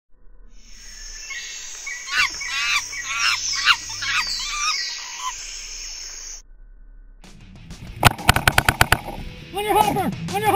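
Edited intro soundtrack: about five seconds of high, repeated chirping calls that cut off suddenly, then a rapid string of sharp cracks about eight seconds in, with music coming in near the end.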